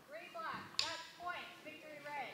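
Indistinct talking from people in the hall, with one sharp knock a little under a second in.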